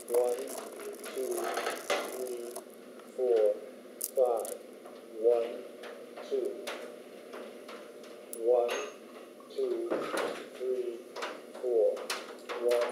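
Short wordless vocal sounds from a voice, roughly one a second, mixed with sharp clicks and rattles from a pearl necklace being lifted from a jewellery box and put on.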